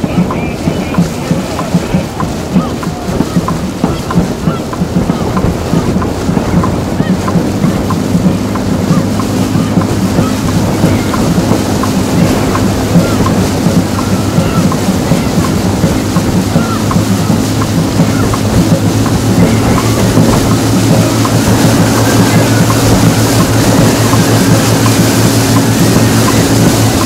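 Dragon boats racing: quick, regular drumbeats and paddle strokes over the wash of water. From about a third of the way in, a steady engine hum rises beneath them and grows louder toward the end.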